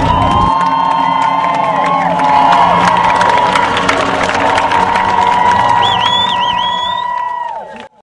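Large crowd cheering, many voices holding long shouts and whoops that trail off together near the end, with one high wavering note rising above them late on. The sound cuts off abruptly.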